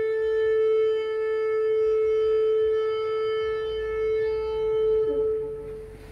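One long horn blast held on a single steady note, a trumpet call for the sounding of the last trumpet. It fades away near the end as a few soft musical notes come in.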